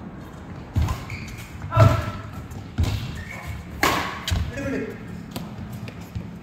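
Badminton rackets striking the shuttlecock in a doubles rally: a run of sharp hits about a second apart, the loudest a little under two seconds in, in a large echoing hall.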